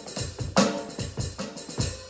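Drum kit played with sticks in a steady rock groove: several strokes a second, with a louder accented hit about half a second in.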